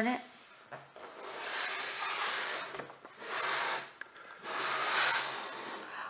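A LEGO Duplo playhouse's plastic base scraping across a tabletop as the house is turned around, in three slides, the first the longest.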